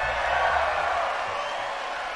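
A crowd of many voices cheering together, loudest about half a second in and then slowly fading.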